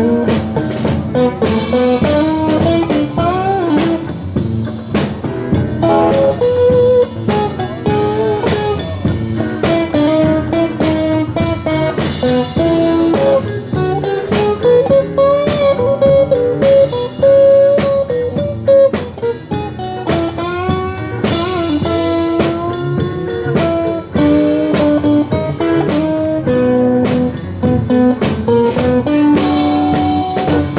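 Electric blues band playing live: an electric guitar plays a lead full of bending notes over a drum kit.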